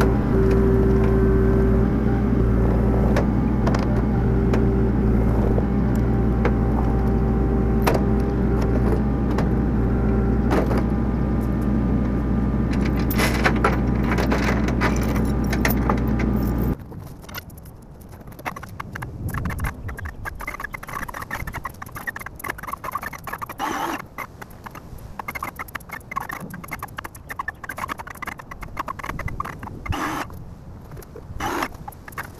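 Kubota mini excavator's diesel engine running steadily with a held higher whine, cutting off abruptly about 17 seconds in. After that come quieter, irregular metallic clinks and rattles of a lifting chain.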